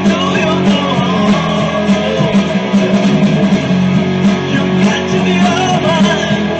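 Electric guitar, an EVH Wolfgang Standard, played loud and continuously in a rock style, with some pitch glides in the lead line.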